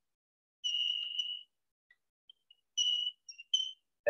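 Chalk squeaking on a blackboard while writing: a high-pitched squeak lasting nearly a second, starting about half a second in, then three or four shorter squeaks near the end.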